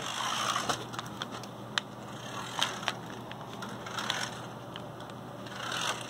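Small electric motor and plastic gearbox of a cheap 1/24-scale New Bright RC pickup truck whirring as it drives on carpet, rising and falling in a few surges, with scattered light clicks.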